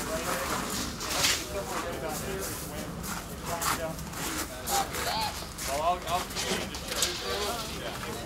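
Indistinct background talk from a film crew, with scattered clicks and knocks over a steady low hum.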